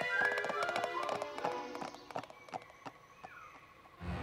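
Cartoon pony hooves in a quick clip-clop, running off and fading away, over light music.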